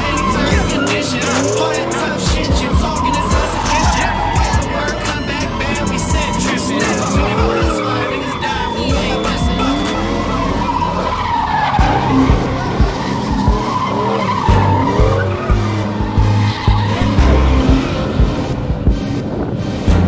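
Cars doing donuts and burnouts: tyres squealing in wavering, rising-and-falling arcs with engines revving. A rap track plays along with them, and its heavy bass beat comes in strongly about halfway through.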